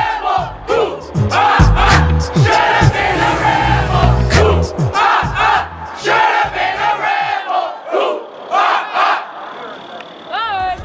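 A group of JROTC cadets shouting in unison in short, repeated phrases, a military marching cadence or drill call, over crowd noise. Low thuds run beneath the voices through the first half.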